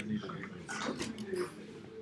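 Faint, low murmured voices in a room, with a few light clicks and rustles near the middle.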